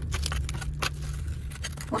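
Flat metal chisel breaking out brick and plaster from a cut wall chase by hand: irregular sharp knocks and scrapes of steel on masonry, over a steady low hum.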